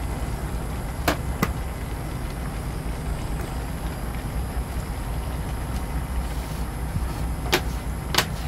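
Steady low rumble of the stove under a wok of cooking vegetables. Two sharp clicks come about a second in as the plastic bowl of sliced vegetables is tipped against the pan, and another comes near the end.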